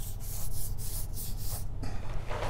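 Felt-tip marker drawing lines on paper pinned to a wall: several quick scratchy strokes.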